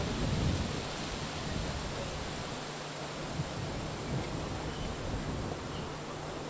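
Outdoor microphone noise: a steady hiss with irregular low rumbling, of the kind wind or camera movement makes on the microphone.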